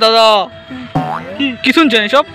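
A cartoon-style "boing" sound effect at the start, falling in pitch over about half a second. Then comes a short rising glide, and a man's voice singing over faint background music.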